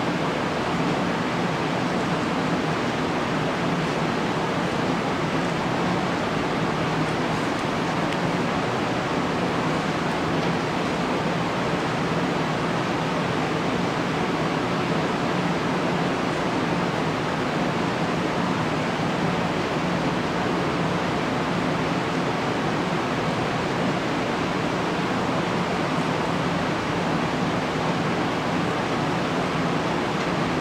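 A steady, even rushing noise with no breaks or distinct events.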